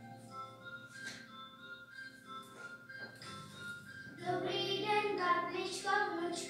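Music playing with steady held notes, then children singing over it from about four seconds in, noticeably louder.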